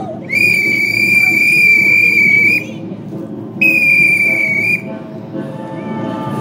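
Drum major's whistle sounding a steady high note: one long blast of about two seconds, then a shorter blast of about a second a second later.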